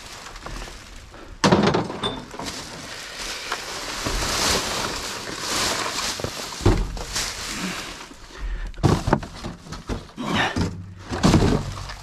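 A glass bottle tossed aside lands with a sharp clunk about a second and a half in. Then comes the rustle of plastic rubbish bags and packaging being rummaged through, with a few more knocks near the end.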